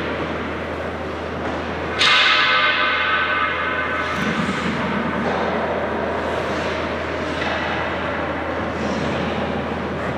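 Steady hum of an indoor ice rink, broken about two seconds in by a sudden loud metallic clang that rings on and fades over a few seconds.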